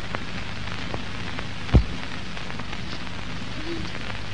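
Surface noise of an old film soundtrack: a steady hiss with a faint low hum, scattered crackling clicks, and one loud pop a little under two seconds in.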